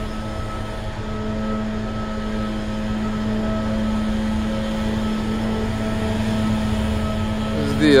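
Steady mechanical drone at one constant pitch, with a low rumble under it.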